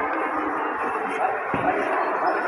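Indistinct murmur of background voices and general room noise, echoing in a large church hall.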